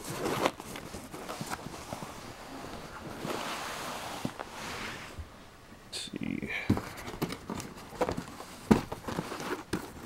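Rustling and handling noise as a handheld camera is moved about, with scattered light knocks and clicks.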